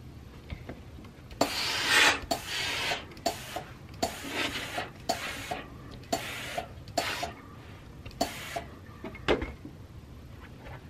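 Steam-generator iron pressing a cotton pillowcase: a run of short noisy strokes, about seven of them, as the iron is pushed over the cloth, with a low thump near the end as it is put down.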